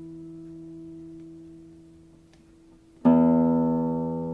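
Classical guitar: a held chord fades slowly for about three seconds. Then a loud new chord is struck and rings out.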